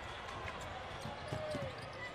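Basketball arena sound: a steady crowd murmur with a ball being dribbled on the hardwood court, heard as faint scattered thumps.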